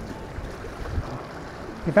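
Strong wind buffeting the microphone in a steady low rumble, with choppy high-tide water sloshing against concrete steps.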